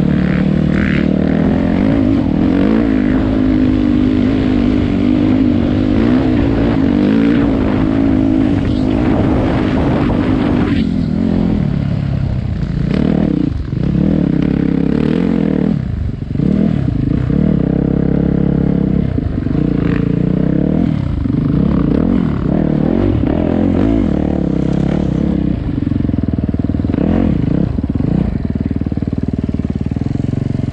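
Yamaha YZ450F dirt bike's single-cylinder four-stroke engine running under load. It holds steady revs for the first ten seconds or so, then the revs repeatedly drop and climb again as the throttle is closed and reopened.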